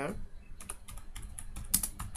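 Typing on a computer keyboard: a quick, irregular run of keystroke clicks, with one louder keystroke near the end.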